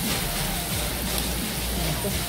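Meat and shrimp sizzling on a gas tabletop Korean barbecue grill: a steady, rain-like hiss.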